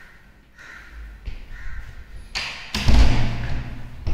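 A wooden interior door being handled and swung, with a loud thud about three seconds in that rings on in a bare room.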